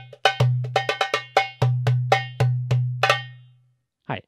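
Darbuka sombaty, a larger-size goblet drum, played with the hands in a quick rhythm. Deep, ringing doum bass strokes are interleaved with sharp, bright tek strokes near the rim. The playing stops about three seconds in, and the last stroke rings out.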